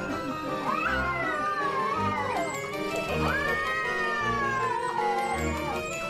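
A domestic cat yowling at a plush toy tiger in two long, wavering calls that rise and fall in pitch, over background music.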